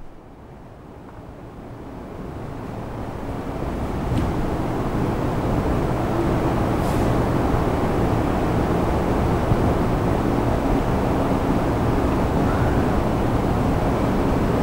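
Steady low rumbling background noise with a faint hum in it, swelling over the first few seconds and then holding level.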